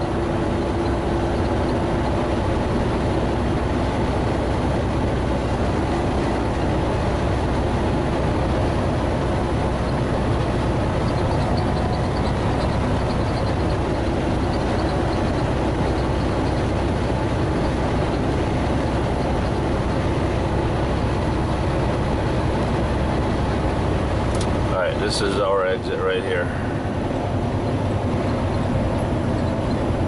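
Steady drone of a semi-truck's diesel engine and road noise inside the cab while cruising on the highway. About 25 seconds in, a brief shifting, gliding sound breaks in and the low rumble dips for a moment.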